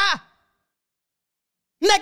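A man's voice trails off at the end of an emphatic phrase, followed by about a second and a half of dead silence before he starts speaking again.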